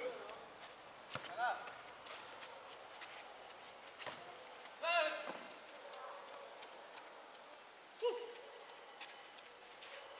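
Faint, distant shouts of players on a small football pitch: a short call a little over a second in, a longer shout about five seconds in, and a brief call about eight seconds in. A few faint knocks of the ball being kicked.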